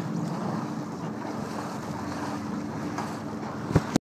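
Wind rushing over the microphone of a small sailboat under sail, with water washing along the hull; the sound is steady. A single sharp knock comes near the end.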